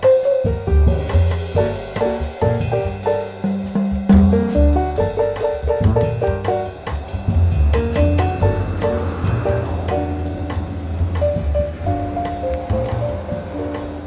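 Background music with a drum kit, a bass line and a melody of held notes, played at a steady beat.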